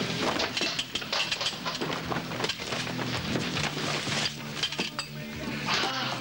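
Household objects, glass among them, clattering and clinking as they hit a hard floor in quick, irregular knocks. A low steady drone runs underneath.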